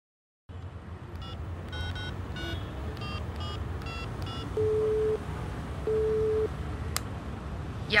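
A telephone number being dialed: a quick run of about nine touch-tone key beeps. Then two ringing tones on the line, each about half a second long, and a click as the call is picked up, all over a steady low hum.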